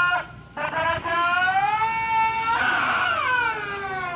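A man's voice holding one long drawn-out shout. It starts about half a second in, gets louder midway and slides down in pitch near the end, an excited commentator's call as the attack reaches the goal.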